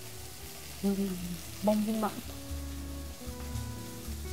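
Cornstarch-coated chicken strips frying in olive oil in a pan on a gas burner, a steady sizzle. Two short hums from a person tasting come about one and two seconds in.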